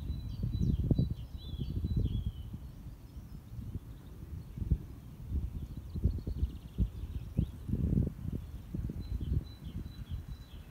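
Wind buffeting the microphone in uneven gusts, with small birds chirping repeatedly in the background and a short trill about two thirds of the way through.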